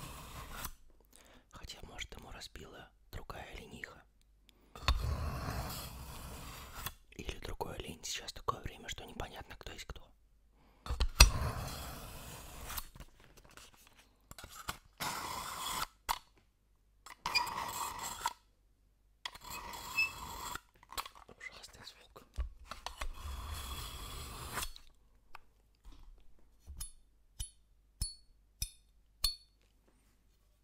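Steel kitchen knife drawn again and again through a pull-through knife sharpener to sharpen it: scraping strokes of a second or two each, with short pauses between. Near the end comes a quick run of light, ringing metallic ticks, about two a second.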